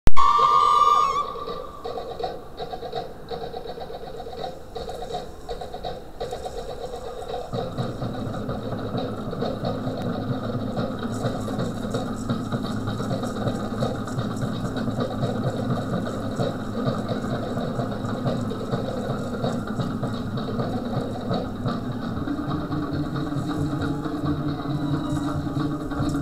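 Fast Tahitian drumming accompanying the dance, a dense, rapid, even beat of short strokes. It opens with a loud pitched tone about a second long, and a deeper layer joins about a third of the way in.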